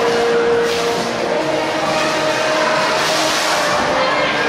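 Loud, steady rush of water as orcas swim fast around the show pool and throw up spray and waves, mixed with crowd noise and a couple of steady held tones.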